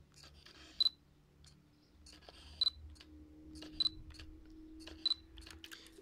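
Fujifilm X-Pro1 with an XF 35mm f/1.4 lens autofocusing four times, every one to two seconds: a brief whir of the focus motor, then a short high beep as focus locks.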